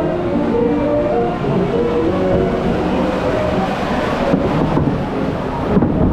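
Splash Mountain's show music playing over the steady low rumble of the log-flume boat travelling through the ride channel; the held melody notes fade out about halfway through, leaving the rumble and a wash of noise.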